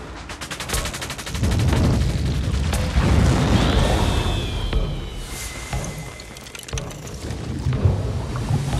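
Cinematic countdown intro sound effects: a fast rattle of clicks, then heavy booming rumble with a high whistle gliding downward, easing off in the last seconds.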